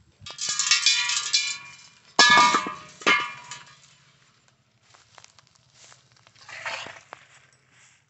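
Two loud metallic clangs, each ringing on with a steady bright tone: the first swells in and rings for over a second, the second starts sharply about two seconds in and rings down over a second or so. A soft rustling sound follows near the end.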